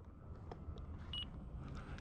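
Faint low outdoor rumble with no clear motor tone, broken about a second in by one short high-pitched beep.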